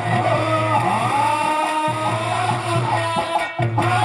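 Live Indian folk music from the stage band: an instrumental melody gliding and bending in pitch over a steady low drone.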